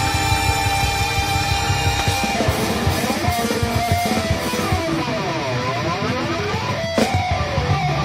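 Live band jam led by electric guitar. About two seconds in the bass and drums thin out, leaving sliding guitar notes that rise and fall, with a sharp hit near the end before the full band comes back in.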